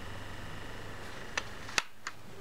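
Baby bouncer's vibration motor humming low and steady, with a light click partway through and a sharper click near the end as the hum cuts off.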